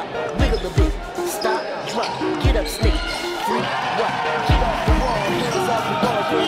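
Hip-hop track in a gap between rapped lines: deep bass kick drums falling in pitch, struck in pairs about every two seconds under a synth riff.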